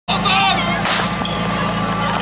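A portable fire pump's engine running steadily, with a short shout early on and a single sharp crack about a second in: the start signal that sets the team's run and clock going.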